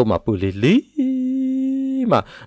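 A man speaks a few syllables, then holds one steady hummed tone for about a second.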